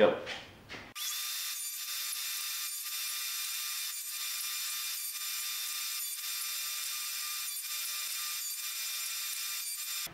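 Table saw running and making a series of 45-degree cuts through wooden 2x2 frame pieces. It is a steady whine that starts about a second in, heard thin with no low end, with brief dips every second or so.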